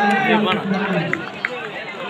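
Several people talking and calling out at once, their voices overlapping over the general murmur of an outdoor crowd.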